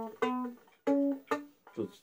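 Single notes plucked on a Russian folk plucked-string instrument, one after another, stepping up in pitch, each ringing briefly and fading.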